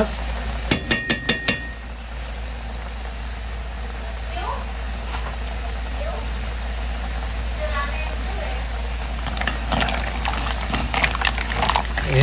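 A metal utensil tapped about five times in quick succession against the rim of a steel cooking pot, with a short ring, shaking off grated cheese. Near the end, a spoon stirs through the mussels in their shells in the pot with a dense clatter of clicks.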